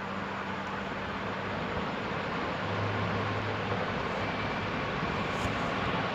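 Steady background noise, an even hiss over a low hum, with no speech.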